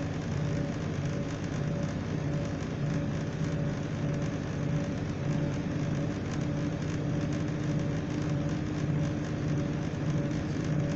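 Inside the passenger saloon of a moving class 175 diesel multiple unit: steady running noise of the train at speed, a low drone from the underfloor diesel engine with a rushing wheel-and-rail roar over it. The low hum swells and fades slightly about once a second.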